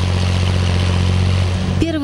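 BMP infantry fighting vehicle driving on a muddy field road, its engine running loud and steady with a deep hum.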